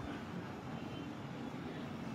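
Steady, faint background noise (room tone) with no distinct events.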